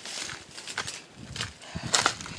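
Footsteps crunching through dry leaves and grass at a walking pace, about one step every half second or so.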